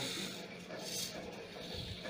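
Hobby servo motors in a homemade three-servo robotic arm driving its joints and fingers, a low-level mechanical noise with no clear rhythm.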